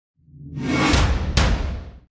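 Intro logo sting: a swelling whoosh over a low boom, with two sharp hits close together near the middle, fading out at the end.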